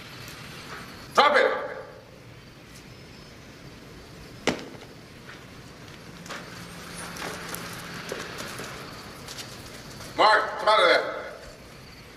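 A man's short shout, a single sharp click or knock about halfway through, then two more shouted words near the end, over a low steady room tone.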